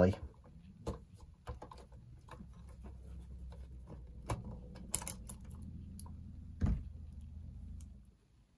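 Screwdriver working a small machine screw out of a cassette recorder's circuit board: scattered light metal clicks and scrapes, a few sharper ticks among them, over a faint low hum.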